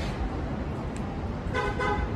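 A car horn gives a short double toot near the end, over steady low city street noise.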